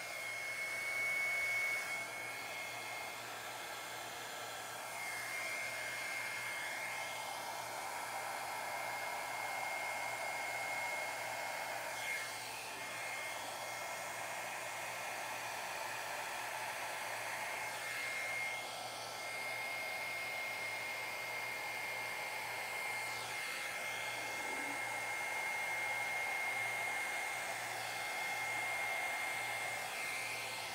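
Hair dryer running steadily, blowing thinned acrylic paint across a canvas: rushing air with a thin, steady high whine, and small dips in level now and then as it is swept over the paint.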